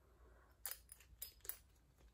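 A handful of light clicks and taps, bunched between about half a second and a second and a half in, as a glass dropper is put back into a small amber glass bottle and its cap is screwed on.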